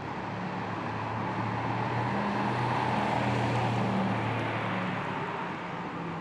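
A car passing by: rushing road and tyre noise with a low hum that swells to its loudest about three to four seconds in, then fades away.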